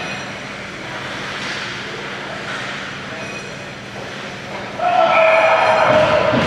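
Ice rink hockey game: skates and sticks on the ice, distant voices and a steady hum. About five seconds in, a loud held horn-like tone breaks in as players gather at the net.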